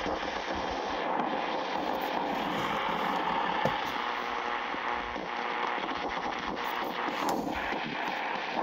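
Longwave radio static from a Sony ICF-SW7600G portable receiver tuned to 216 kHz: a steady hiss with scattered crackles and no station audible.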